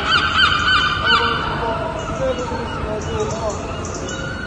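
A gull calling: a quick run of rising-and-falling notes through about the first second, then fainter.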